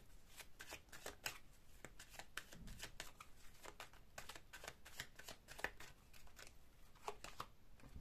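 A deck of oracle cards being shuffled by hand: a faint, irregular run of card clicks.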